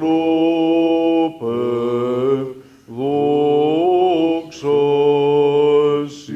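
A man chanting Greek Orthodox Byzantine liturgical chant, in four drawn-out phrases of long held notes with short breaks between.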